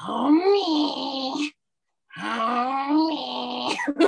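A person's voice making two long wordless vocal sounds in a put-on voice, each about a second and a half long, the pitch rising and falling within each.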